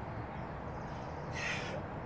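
A single short crow caw about one and a half seconds in, over a steady background hiss.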